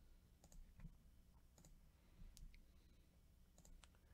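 Near silence with a handful of faint, sharp computer mouse clicks scattered through the few seconds, over a faint low hum.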